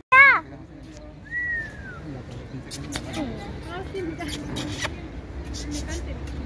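A short, loud, high-pitched call that rises and falls, then a single thin falling whistle, over a faint murmur of people talking.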